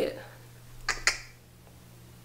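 Two short, sharp clicks in quick succession about a second in, followed by a faint steady low hum.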